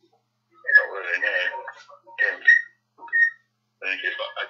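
A voice heard over a mobile phone call, speaking a few short phrases. It sounds thin, with no low end.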